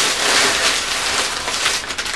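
Plastic rustling and crinkling from a shopping bag and a cellophane wrapper being handled, a steady, continuous crackle.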